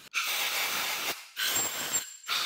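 Two bursts of hissing, scraping noise, each about a second long, from a thin steel tool being worked inside a valve guide of an aluminium diesel cylinder head.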